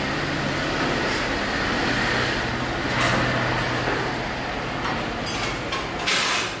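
TIG welding arc with argon shielding gas burning steadily on a pipe joint: a continuous hiss over a low steady electrical hum, with a short louder hiss near the end.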